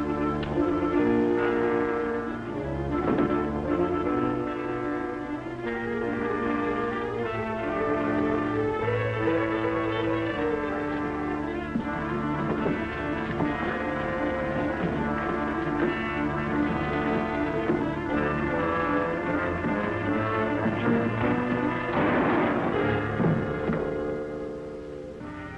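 Dramatic orchestral film score, brass and strings playing held, shifting chords, with a short burst of noise about two seconds before the end.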